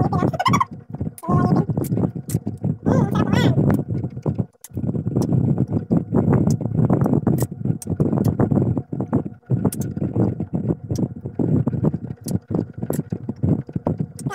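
Close-up chewing and crunching of unripe green mango slices, with muffled voice-like sounds mixed in, about three seconds in.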